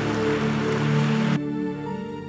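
Soft sustained keyboard pad chords holding under a steady hiss-like haze of noise. The haze cuts off suddenly about two-thirds of the way through, leaving the chords alone.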